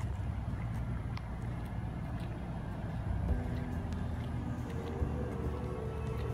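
Low, steady engine rumble, with sustained music notes coming in about three seconds in.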